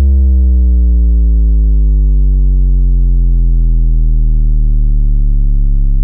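A single long, deep synthesized note from an electronic beat made in FL Studio, held and slowly sliding down in pitch.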